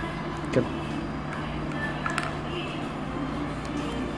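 A few light clicks of plastic syringe parts being handled and fitted together, one about half a second in and fainter ones around two seconds in, over a steady low hum.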